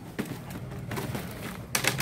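A few light clicks and clacks, with one louder, brief rustle-clack near the end, from a plastic shopping basket and the plastic-wrapped decorations in it being handled.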